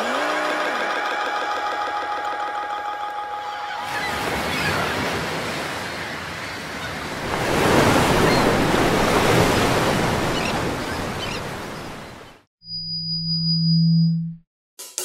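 Electronic music outro with no drums. A held synth chord with a short gliding tone gives way after about four seconds to a wash of noise like surf, which swells and then cuts off. Near the end a low hum with a thin high whine sounds for about a second and a half.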